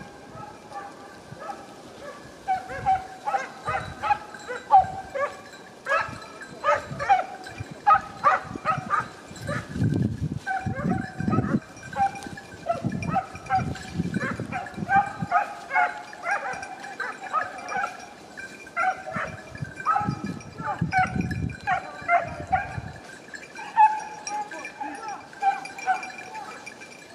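A pack of hunting hounds baying and yelping in quick overlapping calls, giving tongue on wild boar that have been pushed from cover. There are two spells of low rumble, one around the middle and one later.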